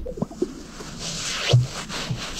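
Greater sage-grouse in its strutting display: a swish of feathers, then a low pop from its inflated chest air sacs about one and a half seconds in.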